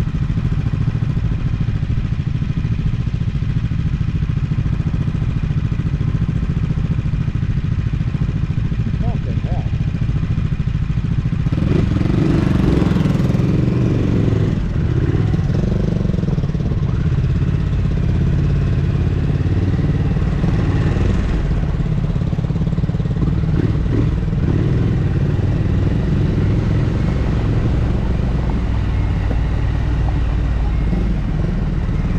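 Triumph motorcycle engine idling steadily while stopped, then pulling away about twelve seconds in and running on the move, louder and with wind noise on the microphone.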